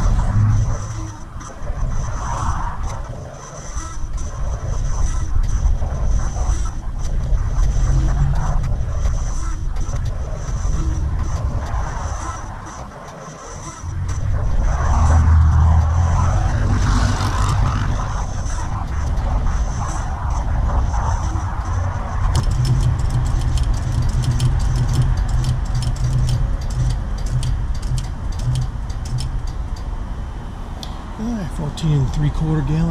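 Gas station fuel pump dispensing gasoline, its motor running with a rough, laboring drone that sounded like a sick mule, as if about to die. The drone dips briefly about halfway through, and a rapid ticking joins in for the last third.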